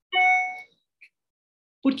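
A single bell-like ding: one clear tone that starts sharply and fades away within about half a second.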